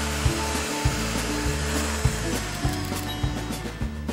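Electric hand mixer running steadily, its beaters whipping heavy cream toward stiff peaks.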